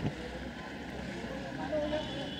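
Indistinct background voices over a steady noisy hum, with a single sharp click right at the start.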